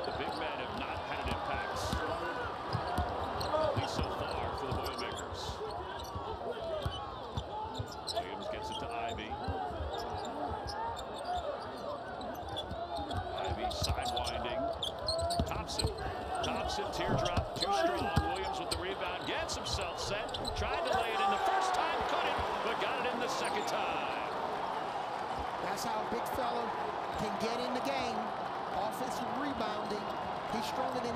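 Basketball being dribbled on a hardwood court during live play: many sharp ball bounces, with players' and coaches' voices calling out on court.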